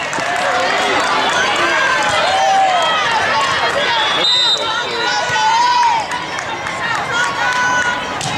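Busy gym hall noise: many overlapping voices of players and spectators talking and calling out, echoing in a large hall, with a few short high squeaks and held tones over them.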